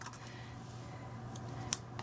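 A small handheld craft punch cutting a tiny butterfly shape out of cardstock: a faint click, then a sharp snap near the end as the punch goes through.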